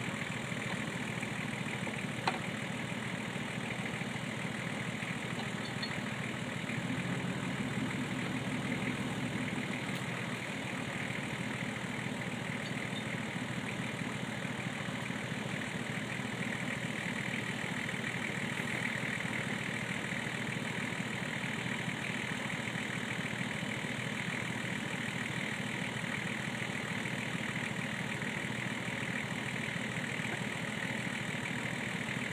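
Four-wheel-drive engine idling steadily, swelling slightly about seven seconds in, with one sharp click about two seconds in.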